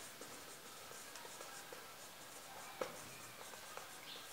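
Marker pen writing on a whiteboard: faint strokes and small taps, with one sharper tap about three quarters of the way through.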